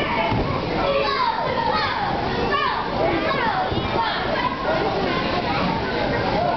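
A group of young children shouting, squealing and chattering over one another as they play on a bouncy inflatable.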